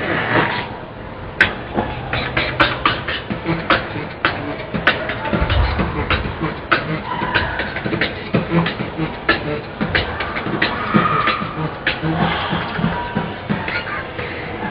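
Human beatboxing: sharp mouth-made snare and click strokes in a steady rhythm over low hummed bass notes, with a deep bass note about five and a half seconds in.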